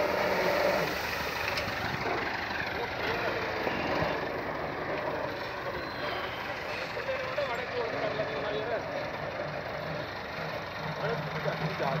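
Farm tractor's diesel engine running steadily as it works a rear-mounted scraper box that pushes loose wheat straw up a heap.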